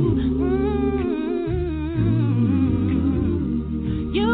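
Music: a song of singing voices with wavering melody lines over steady held low notes.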